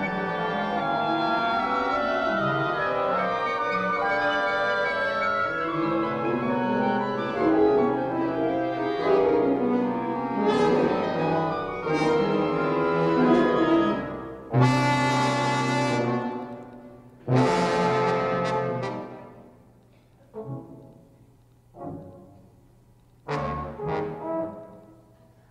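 Symphony orchestra freely improvising, with no written material: a dense cluster of many overlapping held notes. About fourteen seconds in, it breaks into a series of sudden loud orchestral outbursts separated by quieter gaps, the last few short and sharp.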